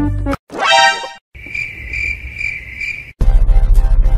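Crickets chirping: a high, steady trill pulsing a few times for about two seconds, after a short rising tone. Upbeat background music with a steady beat comes back in near the end.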